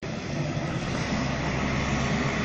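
Steady running noise of a parked aircraft's engines on the apron: a low hum under an even hiss, cutting in suddenly.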